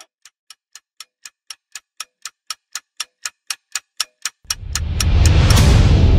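A ticking-clock sound effect, about four ticks a second, growing steadily louder. From about four and a half seconds in, a loud, deep rumble swells up and takes over, leading into dark, tense trailer music.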